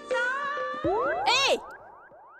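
Background dance music gives way, about a second in, to a cartoon comedy 'boing' sound effect. The boing sweeps up and back down in pitch and is followed by a string of quick falling tones that fade out.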